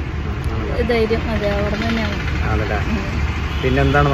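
Speech over the steady low rumble of a car's interior, the engine and cabin noise heard from inside the car.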